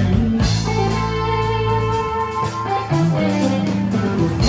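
A live country-rock band playing an instrumental passage with no singing: electric guitars sustaining held notes over bass guitar and drums.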